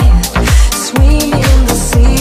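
Deep house music from a DJ set: a four-on-the-floor kick about twice a second under a sliding bass line and hi-hats. The kick drops out briefly just before the one-second mark.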